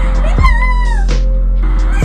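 Music playing at a steady level, with one high voice gliding up and then down for about half a second, beginning about half a second in.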